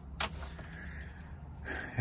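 Light handling noise from a strap with a metal snap button: a short click or two shortly after the start, then faint low room noise.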